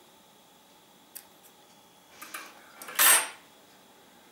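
Small handling sounds of scissors and thread being worked at a table: a faint click about a second in, then a short, louder scrape about three seconds in.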